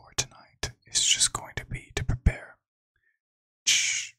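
A man whispering softly close to the microphone, with small sharp mouth clicks between the words. The whispering stops about two and a half seconds in, and a short breathy rush comes near the end.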